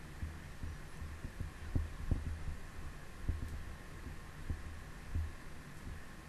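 Low steady hum from the recording microphone setup, with a few soft low thumps scattered through it.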